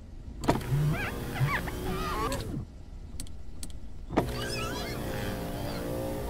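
Car power window motor whining steadily as the glass rises, starting with a click about four seconds in.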